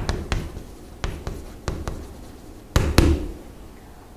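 Writing by hand: a run of sharp taps and short scratches of the writing tool on its surface, the two loudest taps close together about three seconds in.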